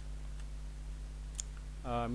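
A few faint clicks from typing on a computer keyboard, over a steady low electrical hum, with a man's voice starting just before the end.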